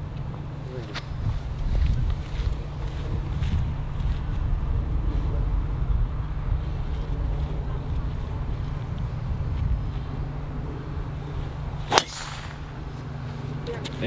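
Driver striking a golf ball off the tee: one sharp crack near the end, over a steady low wind rumble on the microphone.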